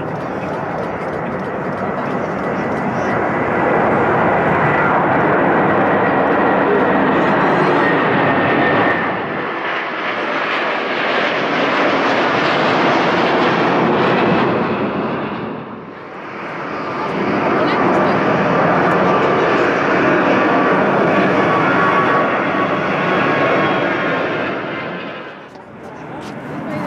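Jet engines of a Swiss Airbus A330 at takeoff power as it lifts off and climbs away: a steady loud roar with a faint high whine, dipping briefly about 9 and 16 seconds in.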